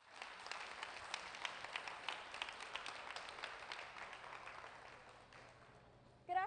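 Audience applauding, starting abruptly and dying away over about five seconds.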